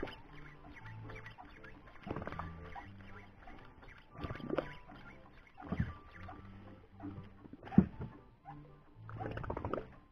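Spinning reel being cranked in short, repeated bursts as a metal jig is worked, with scratchy clicking from the reel and rod and one sharp click near eight seconds in. Low background music runs underneath.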